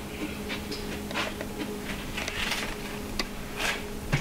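Faint scattered clicks and light scrapes of a small magnetic-tip screwdriver handling a tiny screw and setting it into the SSD screw hole on a MacBook Air logic board, over a steady low hum.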